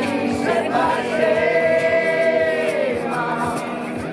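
A group of untrained voices singing a song together in unison, holding one long note through the middle.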